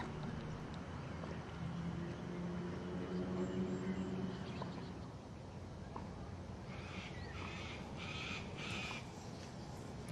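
A bird calling about four times in short, harsh calls in the last few seconds, over a low, steady outdoor hum.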